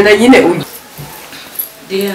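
Speech only: a woman's voice talking, breaking off about half a second in, then low background until another voice starts near the end.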